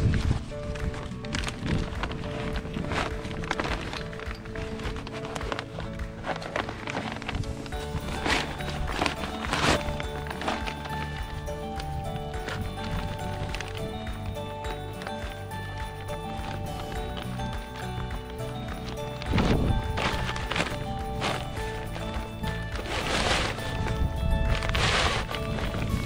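Background music, with a few brief bursts of rustling where the folded camping chair's fabric and steel frame are pushed into its nylon carry bag, loudest about 19 to 20 seconds in and again about 23 to 25 seconds in.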